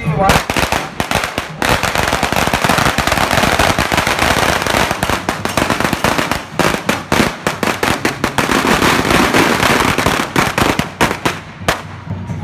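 A string of firecrackers going off in a rapid, dense crackle of bangs that thins to more separate bangs in the last couple of seconds.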